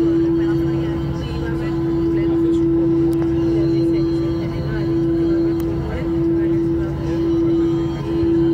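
Airbus A320's IAE V2500 engines running, heard inside the cabin: a steady droning hum with a clear single pitch that swells and fades gently about once a second.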